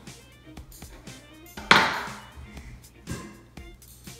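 Background music with light repeated notes, broken by a sharp knock about two seconds in and a softer one near the end: a kitchen knife cutting a lemon slice and striking a wooden chopping board.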